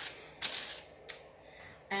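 Parchment paper rustling as it is laid over a drawer front and smoothed down by hand: a brief crinkle about half a second in and a shorter one about a second in.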